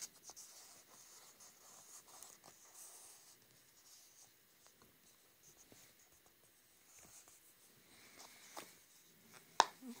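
Fingertips and nails handling a plastic flip phone case: faint scratching and small clicks on the clear plastic shell and its patterned insert, with one sharper click near the end.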